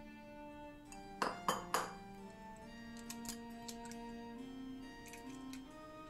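A raw egg being cracked: three sharp taps of the shell against the edge of a bowl in quick succession about a second in, followed by a few fainter clicks of the shell, over soft background music.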